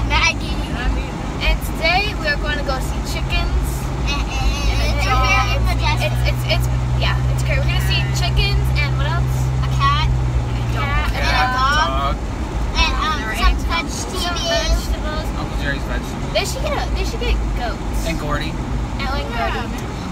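Low, steady engine and road drone of a moving car, heard from inside the cabin. Its pitch rises a little about five seconds in and falls back about eleven seconds in.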